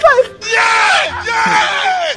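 A young man wailing loudly: a short cry at the start, then one long drawn-out cry that falls in pitch, the sound of comic anguish.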